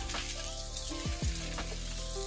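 Sliced vegetables sizzling in hot oil in a skillet on a gas burner, under background music.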